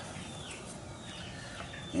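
Faint bird calls in the distance, a few short chirps over a steady low background hiss.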